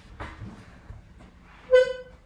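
One short, steady electronic beep near the end, over faint background noise.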